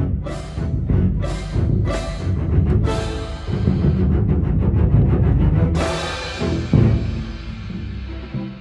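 Orchestral bass drum and clashed pair of cymbals playing over a string accompaniment: several crashes with bass drum strokes, a rumbling stretch in the middle, and a loud cymbal crash about six seconds in that rings on.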